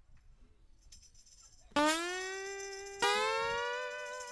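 Acoustic guitar striking two chords about a second apart, each left to ring and fade. They open the song, after a second and a half of near quiet.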